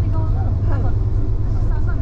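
Steady low rumble of a coach's engine and tyres heard from inside the passenger cabin, under indistinct chatter of passengers.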